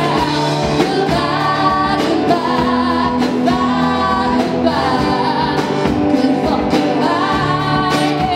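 Live rock band playing: two women's voices singing together over drums, bass, electric and acoustic guitars and a keyboard.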